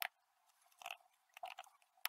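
Faint clicks of a computer keyboard as a word is typed: a handful of short keystrokes, the first the loudest.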